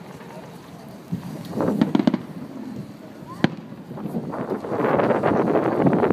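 Fireworks going off: a quick cluster of bangs about two seconds in, a single sharp report past the halfway mark, then a longer, busier spell of noise near the end.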